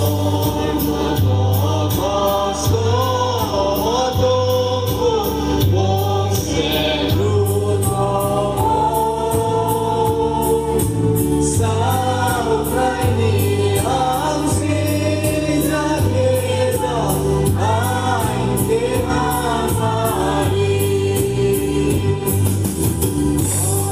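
Mixed choir of women and men singing a gospel hymn together, over instrumental backing with a low, stepping bass and a steady beat.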